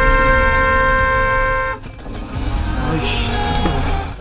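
Car horn sounded in one long steady blast that cuts off a little under two seconds in: a warning at a car that has suddenly cut across into the turn lane. After it, low vehicle rumble under background music.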